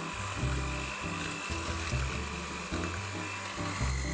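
Electric hand mixer running steadily, its beaters mixing flour into whipped egg and sugar in a stainless steel bowl, over background music.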